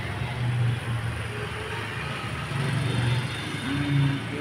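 A steady low rumble with a hiss over it.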